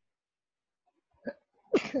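One sneeze, a loud sudden burst near the end after a brief faint sound.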